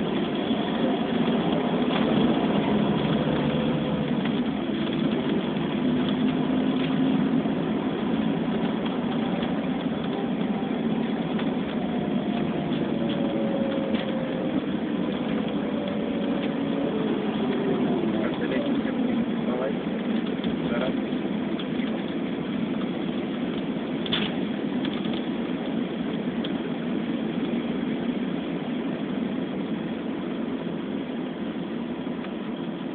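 Engine and road noise heard inside a moving vehicle: a steady rumble, with engine tones gliding up and down in pitch as it speeds up and slows.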